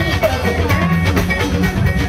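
Live fuji band music: drums and percussion keep a steady beat under guitar.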